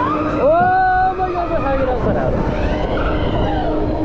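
Wind rushing and buffeting over the microphone as the ride swings through the air, with a low steady hum underneath. About half a second in, a rider lets out a wordless cry that rises sharply, holds for about a second and falls away. Fainter cries follow later.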